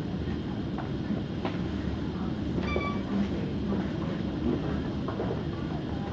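Steady low rumbling background noise with a few faint clicks, and a brief high pitched tone a little before the middle.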